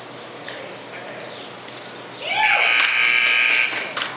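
Arena timer buzzer sounding a steady, flat electronic tone for about a second and a half, starting just past the middle, as the run clock reaches zero: time is up on the cutting run.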